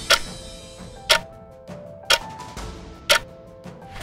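Countdown-timer clock-tick sound effect ticking once a second, four ticks in all, over quiet background music.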